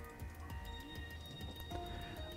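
Faint electronic tones from a Casio CT-S1 keyboard: the repeating signal that sounds once Function + G#5 is pressed, showing that Bluetooth audio pairing mode is on and ready to connect.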